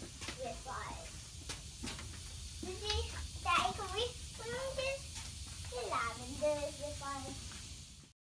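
Indistinct voices talking in several short stretches, some of them high-pitched like children's, with a few sharp clicks in between.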